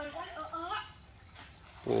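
Faint distant voices calling out in the first second, then a loud close exclamation, "wah", starting just before the end.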